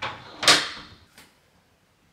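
A bathroom door shutting with a single sharp knock about half a second in, followed by a short fading ring.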